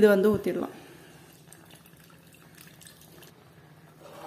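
Faint pouring of coconut milk from a steel bowl into a pan of thick, cooking rice halwa.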